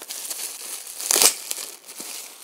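Packaging crinkling as hands lift wrapped items out of a cardboard box, with one louder crinkle about a second in.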